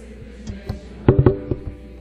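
Live acoustic band playing a brief sparse passage: a few sharp percussion taps, and a short ringing pitched note about a second in.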